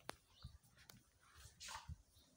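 Near silence, with a faint click at the start, a soft low thump or two, and a short breathy hiss near the end.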